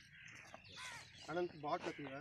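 Crows cawing faintly several times in the second half, over faint open-air background and distant voices.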